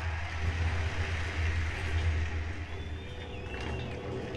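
A deep, steady rumble with a hiss over it, part of the projection's soundtrack played over loudspeakers. Faint high gliding tones come in near the end.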